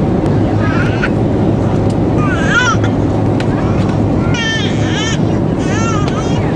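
Steady airliner cabin drone, with passengers' voices speaking in short snatches over it several times.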